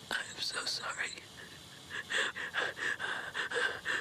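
A crying woman's rapid, shaky breathing close to the microphone: a few quick breaths at first, a short pause, then a fast run of short, gasping breaths.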